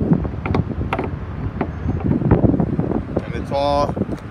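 Wind rumbling on a handheld phone microphone, with irregular handling bumps. A short held pitched sound comes near the end.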